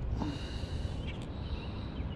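Quiet outdoor background: a low rumbling noise on the microphone, with faint high chirps about a second in and again near the end.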